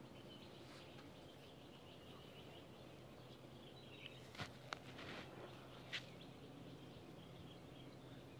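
Near silence: quiet outdoor room tone with faint bird chirps in the background and a few soft clicks in the second half.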